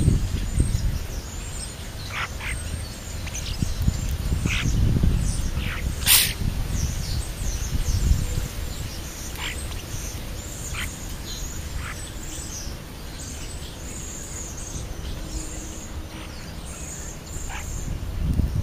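Birds chirping and calling in short scattered notes, some high and thin, some brief falling calls, with one sharp click about six seconds in, over a low rumble.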